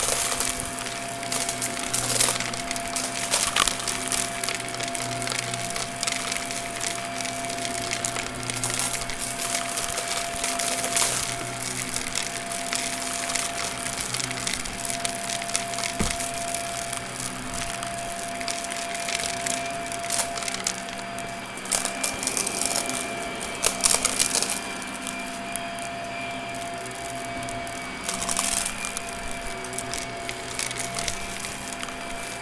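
Shark vacuum running with its hose, sucking up a mess-test mix whose small pieces click and rattle through the hose over the motor's steady hum and high whine. Heard close up, through a microphone fixed to the vacuum.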